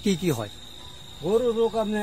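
A man speaking in two short stretches with a pause between, over a steady, high-pitched insect drone from crickets.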